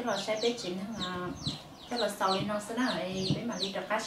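Chickens calling: many short, high calls that fall in pitch, one after another throughout, heard under a woman's talking.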